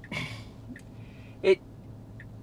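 A man's quick inhaled breath between phrases of speech, over a faint steady low hum in the car cabin, followed by a single short spoken word about one and a half seconds in.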